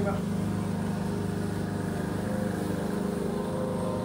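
Lawn mower engine running steadily, a low, even drone with no change in pitch or loudness.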